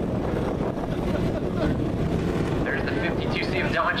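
A pack of dwarf race cars' motorcycle engines running on the dirt track, a steady distant rumble mixed with wind on the microphone. A public-address announcer's voice starts near the end.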